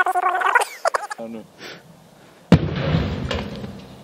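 A pressurised LPG bottle bursting in a fire: one sudden bang about two and a half seconds in, followed by a rumbling rush that fades over a second or so. Voices are heard in the first second.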